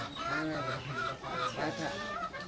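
Domestic chickens clucking in a series of short calls.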